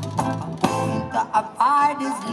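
Live reggae performance: a guitar played in short, choppy strums several times a second, with a sung note coming in near the end.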